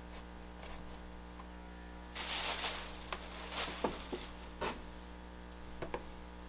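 Potter's hand tools scraping and knocking against clay slabs on a workboard: a short scraping stretch about two seconds in, then a handful of sharp clicks and taps. A steady electrical hum runs underneath.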